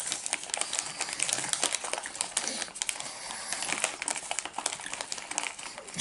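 Takis Waves chip bag crinkling and crackling with many small irregular crackles as a hand rummages inside it and handles it.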